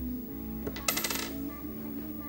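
A small hard object dropping and rattling to rest in a quick run of sharp clicks about a second in, over steady background music.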